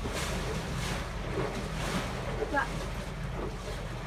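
Narrowboat under way on a choppy tidal river: its engine rumbles steadily while rough water washes against the hull in repeated surges, with wind buffeting the microphone.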